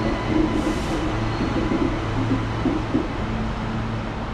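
Steady running noise inside a moving electric suburban train: a rumble of wheels on track with a steady low hum.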